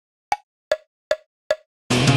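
Play-along software's metronome count-in: four short clicks evenly spaced about 0.4 seconds apart (152 beats per minute), the first slightly higher in pitch. Near the end, the full rock band track with bass comes in.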